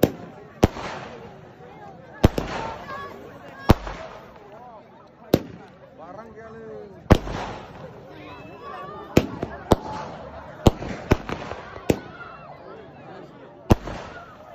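Fireworks going off in a string of sharp bangs, about fourteen at uneven intervals, coming closer together in the second half.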